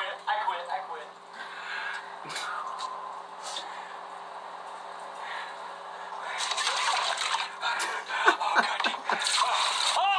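Indistinct voices over a steady low electrical hum. A louder stretch of noise with more voice starts about two-thirds of the way in.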